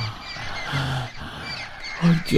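Birds chirping: many short, quick high chirps scattered through the pause, a forest ambience sound effect.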